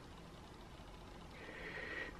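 Quiet room tone, with a faint breath drawn in near the end.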